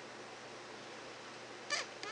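Steady low hiss of room tone, with one brief higher-pitched sound shortly before the end.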